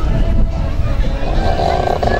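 A steady low rumble, with a buzzing tone joining in over the last half second.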